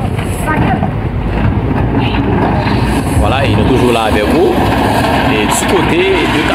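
Steady low rumble of a wheel loader's diesel engine working, with people's voices talking and calling out over it.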